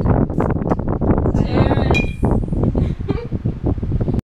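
Wind buffeting the microphone, with a single bright clink of glass bottles about halfway through.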